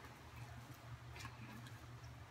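Near silence: a low steady room hum with a few faint ticks as homemade slime is handled and stretched by hand.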